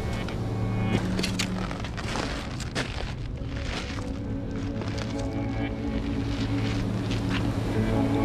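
Background music with held low notes at a steady level, with a few short clicks scattered through it.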